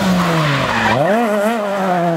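Rally car's engine at speed on a tarmac stage. Its pitch falls as it lifts off, then climbs again about a second in as it accelerates hard, over a rush of tyre and road noise.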